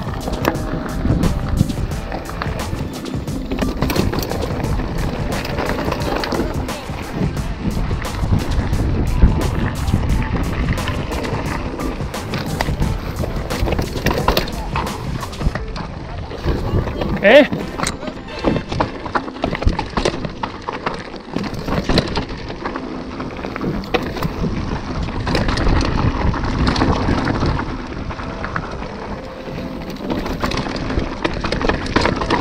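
Mountain bike descending a rocky dirt trail: continuous tyre rumble and rattling of the bike over stones and roots, with wind on the microphone. One sharper clack stands out a little past halfway.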